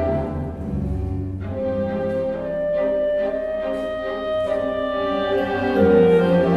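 Solo clarinet with a string orchestra of violins, cellos and double bass playing classical variations in slow, held notes over a low bass line.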